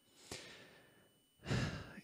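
A man sighing out a long breath that fades away, then drawing a quick breath in near the end before speaking again.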